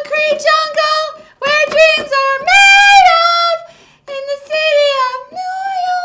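A woman singing unaccompanied in a high voice: three phrases with long held notes, the longest held about two and a half to three and a half seconds in, with short breaks between phrases.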